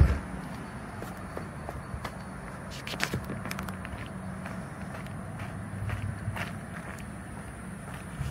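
Footsteps of a person walking on concrete and asphalt, heard as irregular short knocks over a steady low hum.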